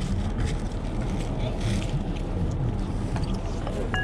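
Steady low rumble of outdoor background noise with faint voices in it, and light rustling as fabric baseball caps are handled and turned over. A short click with a brief tone sounds near the end.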